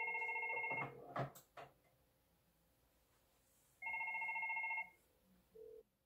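FortiFone 475 IP desk phone ringing for an incoming call that goes unanswered: two electronic rings, each about a second long, about four seconds apart.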